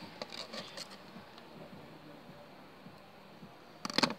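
Faint small clicks and handling sounds of hands working a cut-open marker over slime, then one sharp click just before the end.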